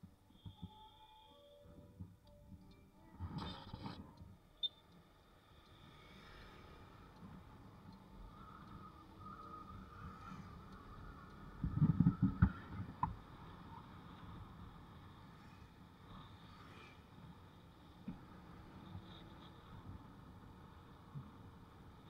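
Faint, muffled running noise of a motorbike on the move. There are low thumps a little over three seconds in and a louder cluster of them around twelve seconds.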